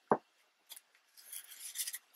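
Sheets of scrapbook paper sliding and rubbing against each other under the hands, a faint, hissy rustle that starts about a second in after a light tick.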